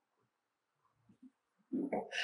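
Near silence, then near the end a short scraping stroke: a hand paint scraper drawn down a wooden post, lifting heat-softened lead paint.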